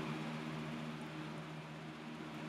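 Steady low hum with a faint even hiss, a quiet room tone with no distinct handling sounds.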